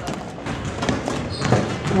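Gymnasium background noise: crowd chatter with a few thuds of basketballs bouncing on the court.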